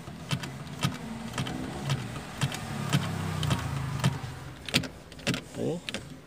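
Repeated sharp clicking, about twice a second, over a low steady hum inside a car, as the seatbelt buckle and its freshly spliced chime-switch wiring are wiggled to check that the connection holds.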